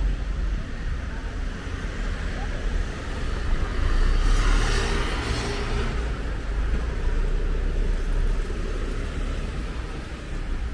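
Natural-gas city bus passing close by: its engine and tyre noise swells to a peak about four to five seconds in and then fades. A steady low traffic rumble runs underneath.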